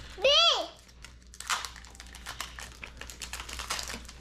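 A child's short, high-pitched exclamation, then Pokémon trading cards being flipped and slid through the hands, with a run of light clicks and crinkles.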